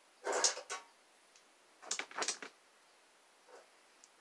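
Small makeup items and clear plastic organizer bins being handled on a dresser top: two brief bursts of clattering and scraping, about a second and a half apart.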